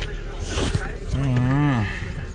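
A man's voice giving one drawn-out, wavering hum of under a second that drops in pitch at its end, over the steady low rumble of a car on the move.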